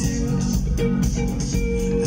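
A band playing live through the PA: guitar and keyboards over drums with a steady beat, heard from within the audience in a concert hall.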